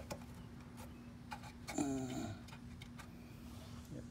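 Scattered light clicks and ticks over a steady low hum, with a short murmured voice sound about two seconds in.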